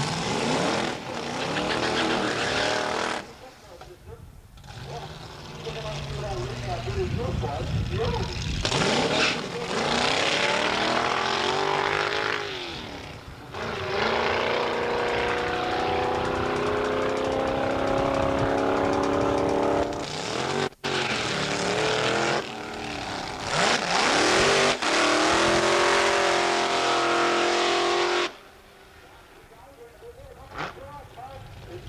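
Doorslammer drag cars' engines at high revs, running hard down the drag strip, their pitch sweeping up and down and then holding steady. The sound comes in several short clips that cut in and out abruptly.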